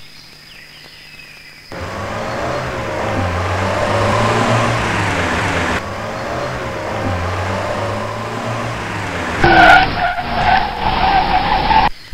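A car engine comes in about two seconds in and runs as the car pulls away, its note rising and falling. A louder, higher sound with a steady tone cuts in for the last two seconds or so.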